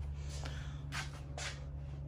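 Three short breathy puffs close to the microphone over a steady low hum.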